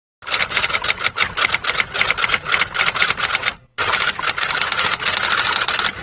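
Typing sound effect: rapid keystroke clicks, about six a second, with a brief pause a little past halfway.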